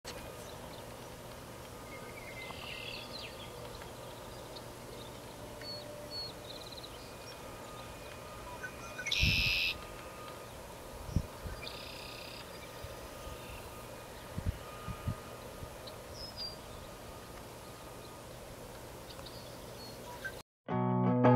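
Outdoor field ambience: scattered short, high bird calls over a steady background hiss and faint hum, with a few brief low thumps in the middle.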